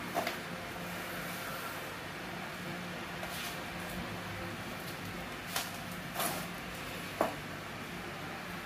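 Low steady hum with about five brief soft knocks and clicks spread through, handling noise as the camera and hand move over the bicycle frame.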